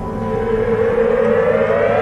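Television programme theme music: a synth swell rising steadily in pitch and growing louder, building up to the main beat.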